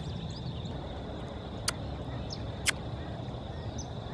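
Outdoor background: a steady low rumble with faint bird chirps, broken by two short sharp clicks about a second apart.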